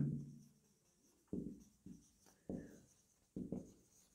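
Marker writing on a whiteboard: about five faint, short strokes with brief gaps between them.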